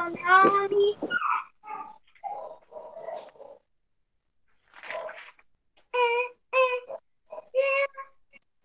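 A young child's voice in short sung or chanted notes that no speech recogniser takes for words. It breaks off for about a second in the middle, then comes back as three or four brief held notes near the end.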